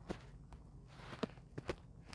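Faint, irregular clicks and taps from a phone being handled and tapped, several short ones over about a second and a half, over a low steady hum.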